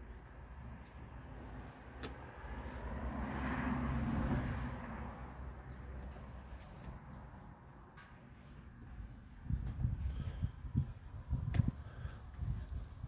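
A motor vehicle passing by, its engine and tyre noise swelling to a peak about four seconds in and then fading, over a steady low outdoor rumble. Near the end comes a run of low thumps.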